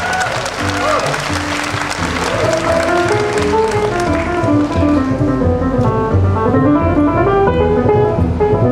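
Live big-band jazz. Audience applause and cheers over the band in the first few seconds, as the trumpeter takes a bow after a solo. Then piano comes forward with running lines over upright bass.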